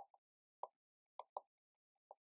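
Faint, short taps and ticks of a pen on the writing surface as letters are written, about five in two seconds.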